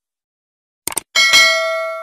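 Subscribe-button animation sound effects: a quick double mouse click about a second in, then a bell-like ding of several ringing tones that fades away slowly.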